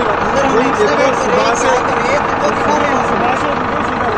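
Men's voices talking, not clear enough to make out words, over a steady engine running in the background.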